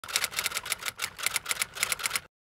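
Typewriter sound effect: a fast, uneven run of clacking key strikes, about seven or eight a second, accompanying a title being typed out on screen.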